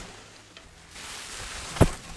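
Bubble wrap rustling as it is handled and lifted inside a cardboard box, growing louder about halfway through. One sharp knock near the end.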